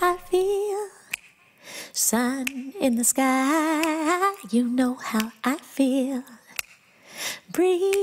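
A woman singing unaccompanied: long held notes with wide vibrato, in phrases broken by short silent pauses.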